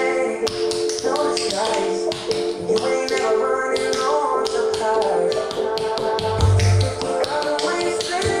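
Tap shoes tapping quick rhythms on a hard floor, with the feet working from a seated position, over a pop song with a singing voice and heavy bass.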